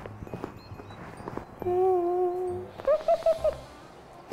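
A woman's closed-mouth hum held on one note for about a second, then a short giggle. Under it run light background music with a soft low beat and some scattered clicks.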